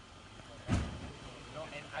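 A brief low thump on the microphone a little under a second in, then faint voices of people talking in the background.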